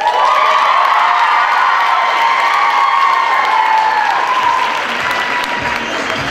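Audience applauding and cheering, with many high-pitched voices screaming together, dying down a little near the end.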